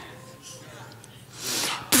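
Faint low hum, then about a second and a half in a short, breathy burst of noise from a person, like a sharp exhale or stifled sneeze.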